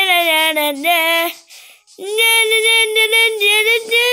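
A young child singing a tune wordlessly on 'na na' syllables in a high voice, with a short pause about a second and a half in before the singing picks up again.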